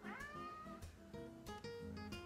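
A cat meows once at the start, a single call that rises and then holds for under a second, over soft acoustic guitar background music.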